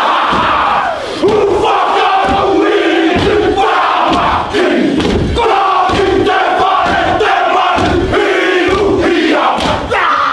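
A Māori haka: a group of men chanting and shouting in unison, with low thumps from stamping feet and slapping between the shouted phrases.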